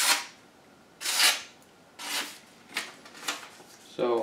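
A Condor El Salvador machete (420HC steel) push-cutting a hand-held sheet of paper: about five short, crisp hissing slices in a row. The edge is cutting cleanly, a sign it is sharp.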